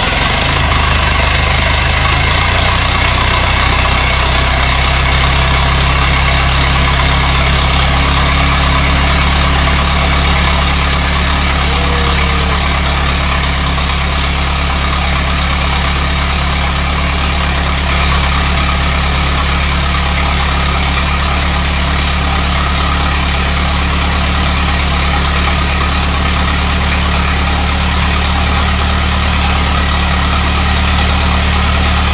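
Ford AA doodlebug's four-cylinder flathead engine idling steadily, settling to a slightly lower, even idle about two seconds in.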